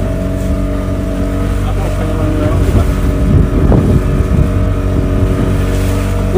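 Small motorboat's engine running steadily under way, a continuous even drone.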